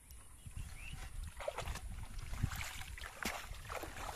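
Shallow pond water splashing and sloshing in short irregular strokes as a person wades through it, with a few stronger splashes in the second half.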